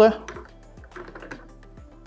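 Faint light plastic clicks and rattles as a mobility scooter's plastic basket is fitted onto its front holder, over quiet background music.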